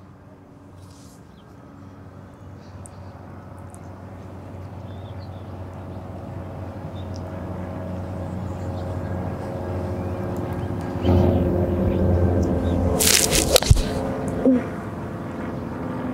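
A small propeller airplane drones overhead, with a steady pitch, growing louder the whole time. About thirteen and a half seconds in, a golf club strikes the ball with a sharp click.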